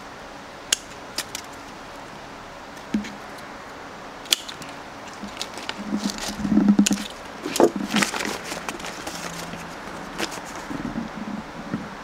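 Steel bonsai scissors snipping small cedar twigs: irregular sharp snips, a few seconds apart at first and coming closer together in the second half.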